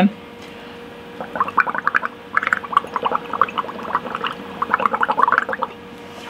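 Air blown through a plastic drinking straw into a cup of dish-soap and acrylic paint mixture, bubbling and gurgling as it raises a foam of bubbles. The rapid, irregular bubbling starts about a second in and goes on for about four and a half seconds, with a brief break partway.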